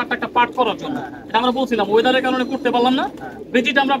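A man talking, with domestic pigeons cooing in the background.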